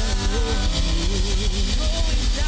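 Live worship band playing: a drum kit with cymbals over sustained keyboard chords and bass, with a melodic line gliding above.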